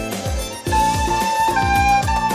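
Soprano recorder playing a melody of held notes that step from one pitch to the next, over a backing track with a steady low drum beat and chords.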